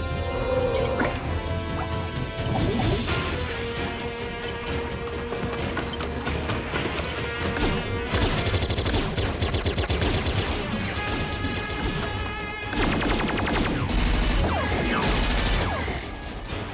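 Dramatic cartoon action score over crashing impact effects. About halfway through, rapid volleys of sci-fi blaster fire set in and run on.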